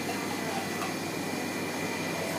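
Steady machine noise with a faint high-pitched whine running through it.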